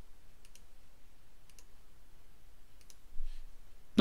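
Faint computer mouse clicks: three quick double clicks spread over a few seconds.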